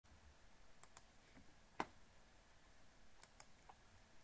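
Near silence broken by about half a dozen faint, short clicks from operating a computer, the loudest a little under two seconds in.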